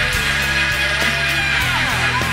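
Loud hard rock band playing an instrumental stretch without vocals: electric guitar over bass and drums, with a note sliding down in pitch near the end.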